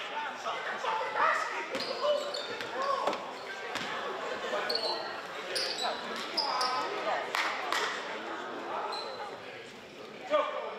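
A basketball bouncing on a hardwood gym floor, several separate thuds, under indistinct voices echoing in a gymnasium.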